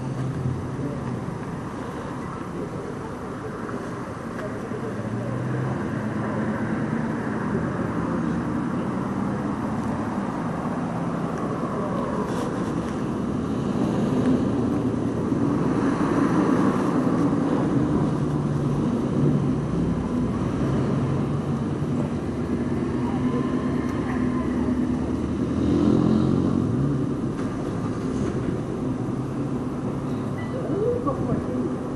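Street noise with vehicle engines running, mixed with indistinct voices that no words can be made out of.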